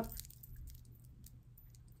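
Faint, scattered light clicks of costume jewelry being handled: a chain necklace with plastic ring links lifted and shifting, over low room hum.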